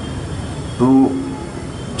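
A man's voice at a microphone says one short word about a second into a pause in his speech, over a steady, fairly loud background noise hiss.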